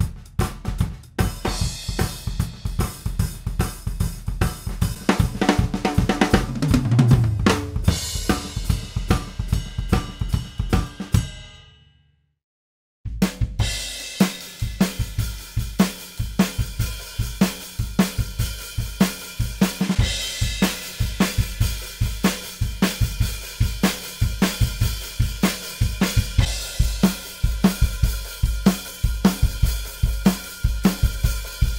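Acoustic drum kit playing, heard as a multitrack recording mixed down with random gain and panning on each drum channel. It fades out, and after about a second of silence another, lower-quality drum kit recording comes in as a plain mono sum of its channels, keeping a steady beat.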